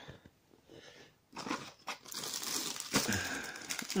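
Crinkly plastic biscuit-pack wrappers rustling as a hand rummages through a bag and pulls a multipack out. It is faint at first and grows to steady crinkling from about a second and a half in, loudest near the end.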